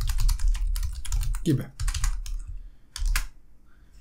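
Computer keyboard typing: a quick run of keystrokes for about two seconds, then a single keystroke a little after the three-second mark.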